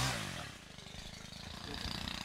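Small motorcycle engine revving once, pitch rising and falling, then running steadily at low speed.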